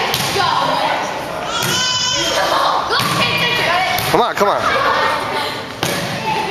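A volleyball being struck during a rally, about five sharp smacks in six seconds, each echoing in a gym, over shouting and cheering voices.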